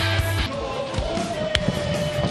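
Background rock music with a steady beat that breaks off about half a second in, followed by a held tone and one sharp click as a graphic transition begins.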